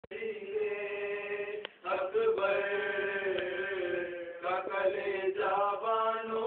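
Unaccompanied male voices chanting a marsiya, the Urdu elegiac recitation, in long held notes that bend and waver slowly. There is a short break about a second and a half in.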